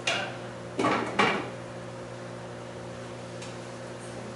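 Cookware clanking at a kitchen stove: three sharp clanks of pans or utensils in the first second and a half, the last the loudest, over a steady low hum.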